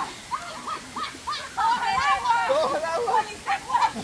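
Several people's excited voices, with short bursts of laughing and calling out.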